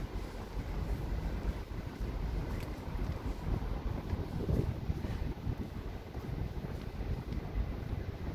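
Wind buffeting the microphone: a low, fluctuating rumble.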